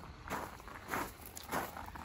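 Footsteps on gravel and dirt: a few soft steps, roughly one every half second.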